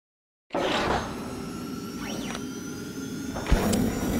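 Channel intro logo sting: after a moment of silence, a burst of swishing noise with held tones starts half a second in, a pitch sweep rises and falls in the middle, and a sharp hit lands near the end.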